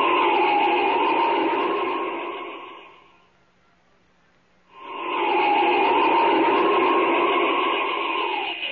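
Radio-drama sound effect of Superman flying: a rushing wind whoosh with a whistling tone that dips in pitch. It fades out about three seconds in, stops for about a second and a half, then swells back in, heard through the narrow, dull sound of a 1940 radio transcription.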